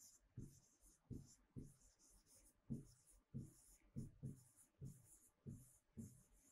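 Faint handwriting with a marker on a whiteboard: a steady run of short scratchy strokes, about two a second, each with a soft tap of the tip.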